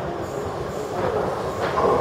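Oslo Metro (T-bane) train approaching the station, its running noise growing louder near the end.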